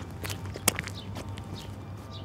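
Footsteps on a paved path: a few irregular steps, the sharpest a little over half a second in.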